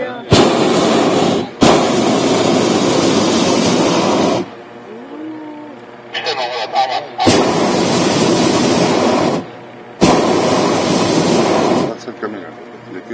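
Hot-air balloon's propane burner firing overhead in four blasts of one to three seconds each, each starting and cutting off sharply, the first two separated by only a short break, with quieter gaps between.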